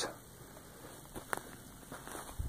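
Quiet outdoor background with a couple of light clicks about a second in: footsteps and handling noise on dry ground.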